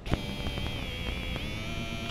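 Homemade spark-gap jammer, a 6-volt step-up high-voltage module arcing across a wire bridge gap: it starts with a click and then gives a steady high-pitched whine over a crackling buzz.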